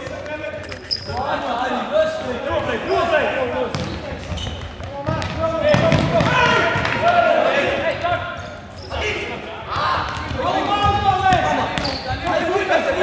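Futsal players calling and shouting to each other in an echoing sports hall, with repeated thuds of the ball being kicked and bouncing on the wooden court.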